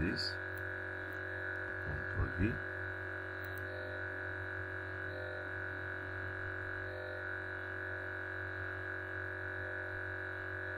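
A steady hum of several held tones running unchanged underneath, with a brief low voice sound about two seconds in.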